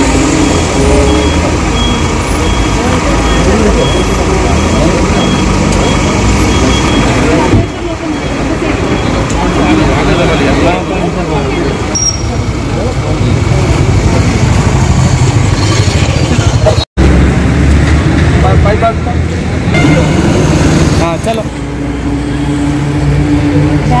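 Road traffic and idling vehicle engines with several people talking in the background. The sound cuts out for an instant about 17 seconds in.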